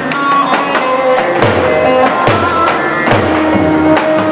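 Live Turkish folk dance music for a halay from a saz band: a held, shifting melody line over regular davul drum strikes with deep thumps.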